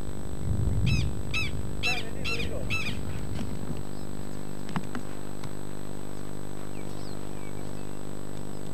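A bird calling five times in quick succession, about two calls a second, starting about a second in. Underneath is a low rumble that settles into a steady hum about halfway through.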